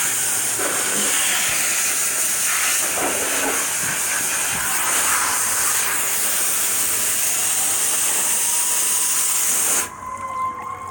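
Garden hose spray nozzle spraying water onto a dog and into a shallow plastic paddling pool: a steady hiss of spray that shuts off suddenly near the end.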